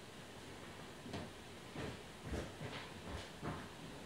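Faint steady hiss with about half a dozen soft taps and rustles, small handling noises of hands working on a tabletop while painting a nail with a thin polish brush.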